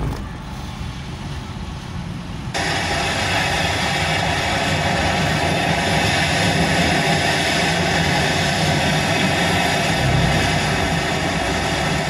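Car cabin noise from a slowly driving car: the engine running with a low steady rumble, and a steady rushing hiss that comes in suddenly about two and a half seconds in.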